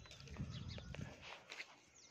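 Faint outdoor background with scattered light clicks and taps, louder in the first half and quieter after about a second and a half.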